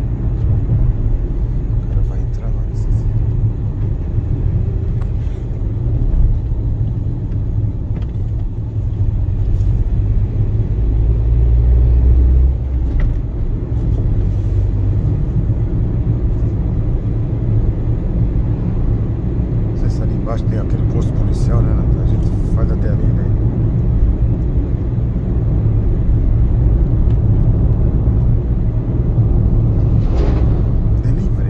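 Car cabin noise while driving on a town street: a steady low rumble of engine and tyres, swelling briefly about eleven seconds in.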